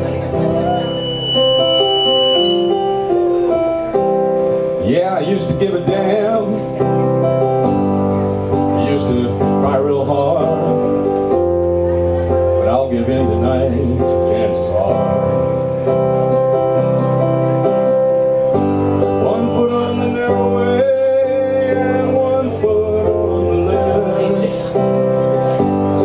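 Electronic keyboard playing a slow instrumental intro of held chords that change every second or two.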